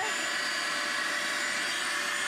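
Hoover Power Path Pro carpet cleaner running with its hose spot-cleaning tool drawn across a carpeted stair: a steady motor and suction whine with a high tone.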